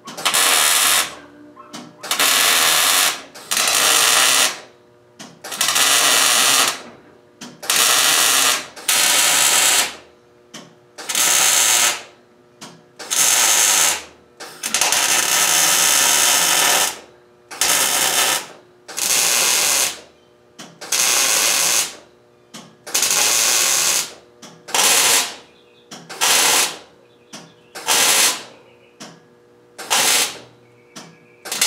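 Electric arc welder laying a series of short stitch welds on steel brackets: about eighteen bursts of welding crackle, each about one to two seconds long, with brief pauses between them.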